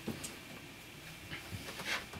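A quiet small room with a few faint, scattered clicks and light rustles, one just after the start and a small cluster near the end.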